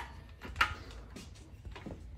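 A few faint, scattered clicks of a socket wrench on the crankshaft bolt of a 5.3 LS V8 as the engine is turned over by hand toward top dead center.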